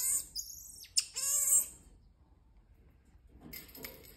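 Marmoset giving short high-pitched chirps and a brief warbling trill in two bursts in the first two seconds, with a sharp click about a second in. The last moments bring a few faint high calls.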